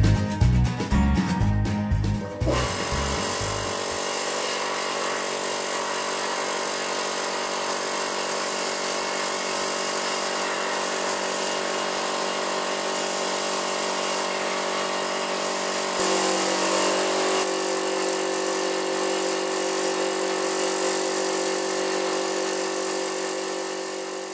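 Music for about two seconds, then a freshly rebuilt electric piston air compressor with a new head gasket running steadily as it pumps its tank up to pressure. Its tone shifts slightly about two thirds of the way through.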